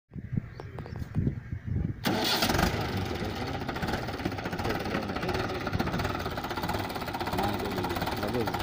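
Mahindra 575 DI tractor's four-cylinder diesel engine. Uneven low thumps for about two seconds, then a sudden jump to a louder, steady running sound.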